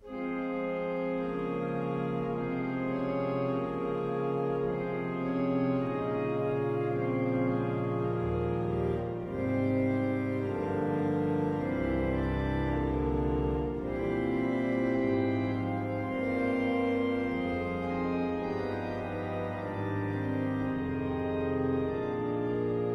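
Pipe organ by Eskil Lundén (1917) playing slow sustained chords on its free-reed Euphone stop, with the octave coupler and a flute added. Deeper bass notes come in about eight seconds in and thin out around fourteen seconds.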